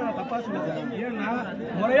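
Several men talking over one another in an argument.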